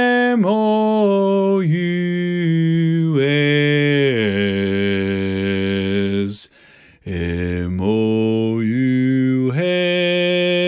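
A man singing the bass part of a barbershop tag solo, spelling out letters on a series of held low notes, with a brief break a little past halfway.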